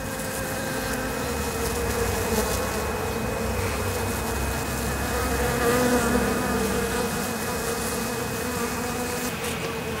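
Honeybees buzzing in a steady hum whose pitch wavers slightly, swelling a little around the middle.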